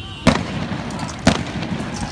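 Two loud, sharp bangs about a second apart, each with a short echoing tail, over a steady background din.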